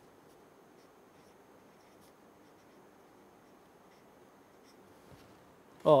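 Felt-tip marker writing a word on paper: a few faint, scattered scratching strokes over quiet room tone.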